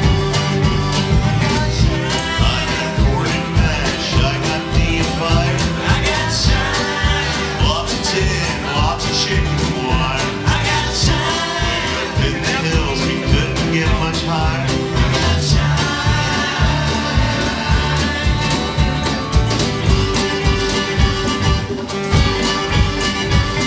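Live acoustic string band playing an upbeat bluegrass-style tune: strummed acoustic guitars over a plucked upright bass keeping a steady beat, with a sung lead vocal.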